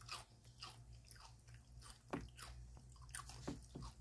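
A person chewing crunchy potato chips close to the microphone: a run of irregular crisp crunches, several a second, with a few louder bites about two and three and a half seconds in.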